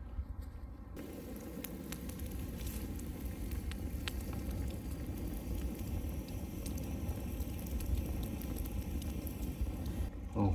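Wood campfire burning, crackling with many small pops and snaps; it comes up louder about a second in.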